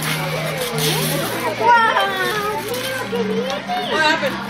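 Excited children's voices and chatter over background music, with wrapping paper being torn off a present.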